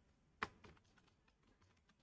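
Faint keystrokes on a computer keyboard: one clearer click about half a second in, then a few much fainter taps.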